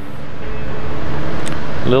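Steady noise of a workshop fan running, with one small click about one and a half seconds in.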